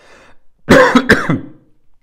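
A man coughing and clearing his throat in two quick bursts, about a second in.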